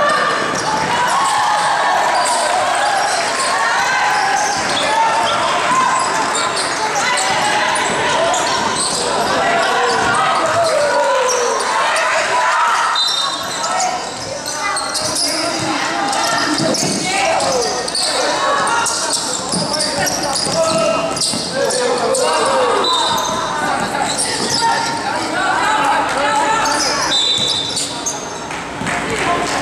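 Basketball bouncing on the gym floor during a game, under many overlapping indistinct voices of players and spectators, echoing in a large hall.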